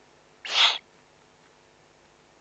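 Eurasian eagle-owl chick giving one short, hoarse, hissing begging call about half a second in.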